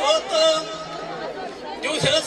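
A man's voice chanting Amazigh verse through a PA microphone, with drawn-out held notes. It pauses about a second in and comes back near the end.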